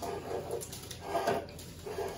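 A person making soft whimpering cries twice, playing at the roast pig crying.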